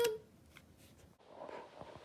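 A voice trails off at the very start, then near silence with a faint, brief rustle about a second and a half in.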